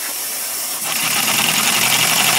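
Small model twin-cylinder engine running on about five pounds of compressed air: a steady hiss of air, then about a second in a quicker, louder, rapid even chatter of exhaust puffs as it picks up speed.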